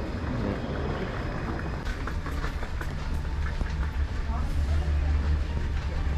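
Airport terminal ambience: a steady low rumble that swells a little in the second half, under faint distant voices and a few light clicks.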